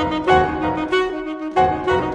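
Alto saxophone and piano playing a fast movement: the saxophone moves through short held notes over struck piano chords, with strong piano attacks near the start and about one and a half seconds in.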